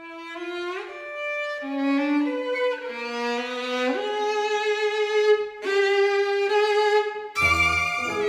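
Violin playing a slow solo melody of long held notes, one held for about three seconds in the middle; a grand piano comes in loudly with low bass notes near the end.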